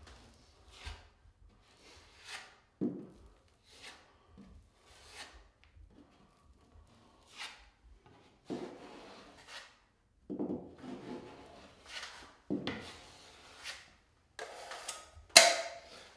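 Steel putty knife scraping and spreading thick, unmixed drywall mud into a damaged drywall corner, in a series of separate strokes. The strokes are short at first and grow longer partway through, with the loudest near the end.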